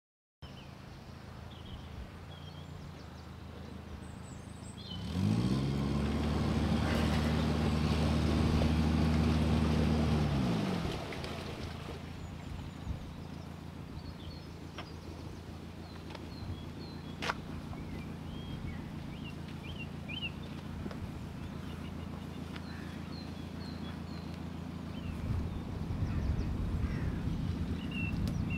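Narrowboat's diesel engine running at idle. About five seconds in the revs rise and hold for about six seconds, then drop back to a steady idle.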